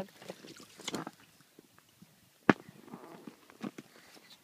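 Light scuffs and taps of a toddler's hands and sandals on an inflatable vinyl water slide as he climbs it, with one sharp tap about two and a half seconds in.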